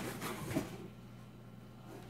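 Cardboard box flaps being pulled open: a few faint scrapes and rustles in the first half second, then a quiet stretch with a steady low hum underneath.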